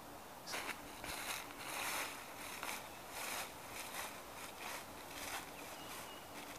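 Footsteps crunching and rustling through dry fallen leaves in irregular bursts, starting about half a second in.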